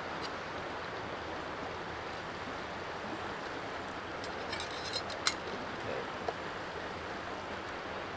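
A few small sharp clicks as a fire piston is handled and opened, the sharpest a little past the middle, over a steady outdoor hiss.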